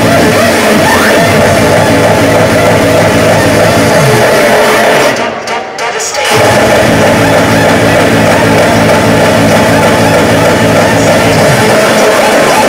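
Loud hardcore techno from a DJ set, played through a concert PA, with a pounding bass line. Just past the middle the bass drops out and the music thins for about a second, then comes back at full level.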